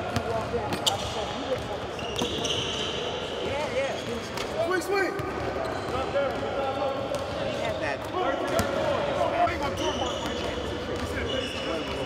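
Basketballs bouncing on a hardwood gym floor in repeated dribbles, with voices in the background.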